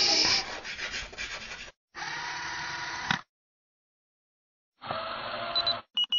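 Chalk scratching on a blackboard for about the first second and a half, followed after short gaps by two more brief noisy sound effects, and the start of a short high beep at the very end.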